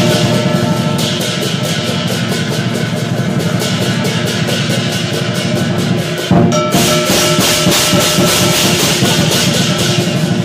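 Chinese lion dance percussion: a large drum beaten in a fast, continuous rhythm with cymbals and a gong clashing and ringing over it. The playing breaks off briefly about six seconds in, then comes back loud.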